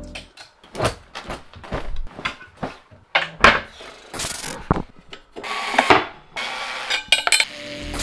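Packing noises: irregular clicks and knocks of items being handled at a wardrobe, with a couple of longer rustles.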